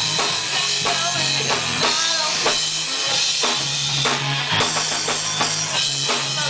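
Live rock band playing a song: a drum kit driving it with bass drum and snare hits, under electric guitar and bass guitar.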